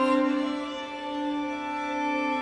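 A quartet of violas d'amore bowing long, sustained notes together in slow, sad-toned modern chamber music, the chord shifting to a new lower note just after the start.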